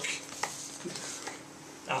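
Faint scratching and light tapping of a pen dragged across an interactive whiteboard screen to highlight text, over a steady faint hum.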